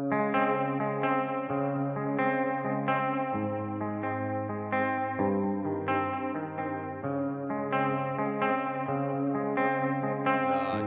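Instrumental music from a hip-hop track: a melody of struck, quickly decaying notes played over a held bass line that moves to a new note every couple of seconds.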